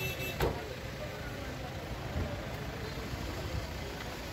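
Vehicle engines running, a steady low rumble, with faint voices in the background. A single sharp knock comes about half a second in.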